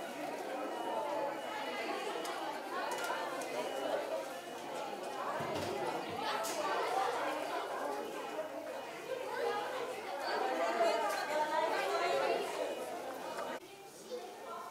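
Chatter of several people talking at once, with no single voice standing out; it drops away suddenly near the end.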